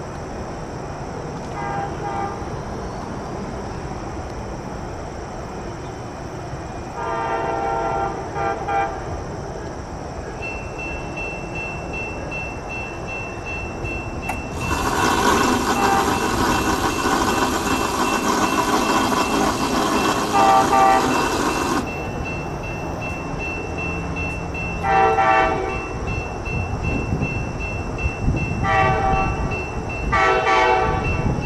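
Train horn sounding a series of blasts as a passenger train approaches: two short ones, then a long stretch inside a loud rushing noise, then more short blasts near the end. A bell rings steadily from about a third of the way in.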